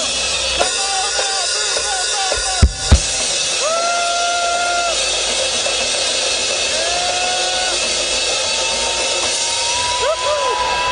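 A church congregation cheering and whooping over a live band's drum kit, with a few held shouted notes. There are scattered drum hits, with two loud ones close together about three seconds in.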